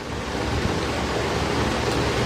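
A steady rushing noise, an even hiss with no pitch to it, that swells slightly at the start and then holds level.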